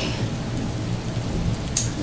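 Steady rain falling, an even hiss of rain that carries on under the narration, with a brief sharper hiss near the end.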